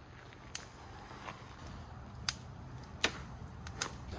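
Campfire of split firewood crackling, with a few sharp, irregular pops over a quiet background.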